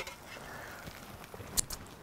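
Grilled cheese sandwiches sizzling faintly on an electric griddle, with a few sharp clicks near the end.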